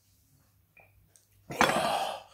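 A man downing a Carolina Reaper shot: a second and a half of near quiet while he swallows, then a loud breathy exhale as the burning heat hits.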